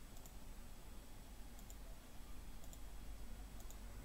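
Computer mouse button clicking faintly four times, each a quick press-and-release pair, over a low steady hiss.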